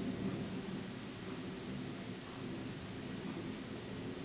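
Low-level steady hiss with a low hum of room noise; no distinct sound events.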